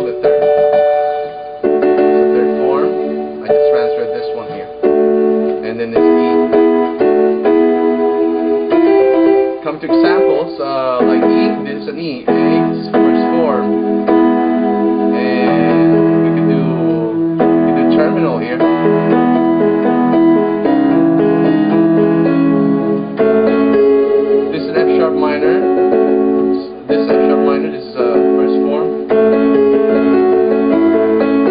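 Electronic keyboard playing sustained chords that change every second or two, chord inversions being worked through; lower bass notes join about eleven seconds in.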